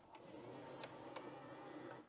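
Faint room hum with two light clicks a little under a second in and about a second in, as filament spools are handled in a 3D printer's multi-spool feeder.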